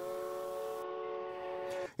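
Steam locomotive chime whistle: one long blast of several tones sounding together as a chord. It rises slightly in pitch as it opens, holds steady, and cuts off sharply near the end.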